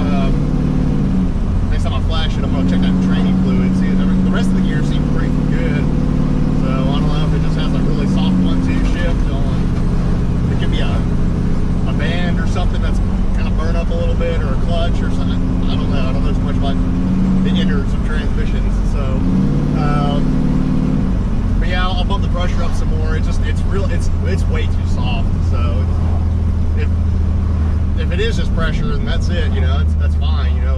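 Cammed 5.3 L LS V8 pickup heard from inside the cab while driving, with steady road noise. The engine's pitch steps up and down several times, rises and falls about twenty seconds in, then settles lower near the end.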